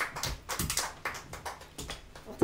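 Several quiet taps and knocks at uneven spacing, with a few low thumps, in a small room.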